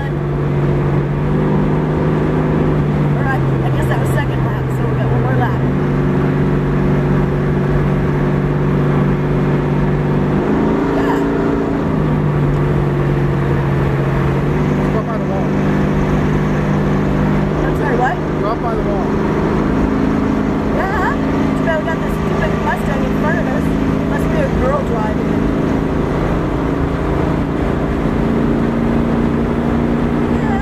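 1971 Pontiac Firebird's engine heard from inside the car at track speed, its note holding steady and then stepping down or up with the throttle a few times, over constant wind and road noise.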